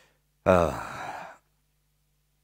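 A man's voiced sigh, a single out-breath falling in pitch, starting about half a second in and lasting about a second.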